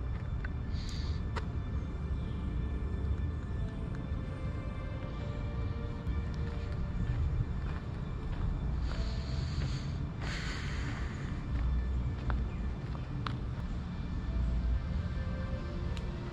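Background music of slow, held tones over a steady low rumble, with two brief hisses about nine and ten seconds in.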